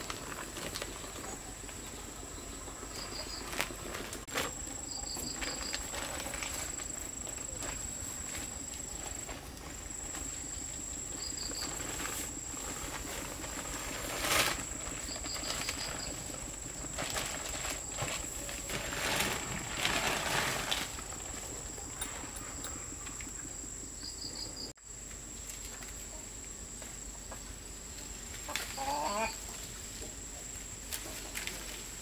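Rustling of leaves, branches and a plastic bag as fruit is picked by hand and tipped into a woven basket, over a steady high-pitched insect drone. Short chirps recur every few seconds, and a short call sounds near the end.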